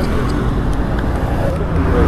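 Steady engine and road noise of motor-vehicle traffic passing on the road.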